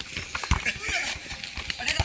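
Irregular thuds of bare feet and a football striking packed earth in a casual barefoot game, one sharp thud about half a second in, with children shouting.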